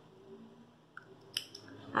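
Small thread snips cutting a notch into the edge of a fabric piece to mark where the pocket begins: a couple of short, quiet snips a little after a second in.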